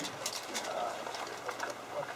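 Low room noise from a seated audience: scattered small clicks and rustles, and a faint, brief voice-like murmur a little under a second in.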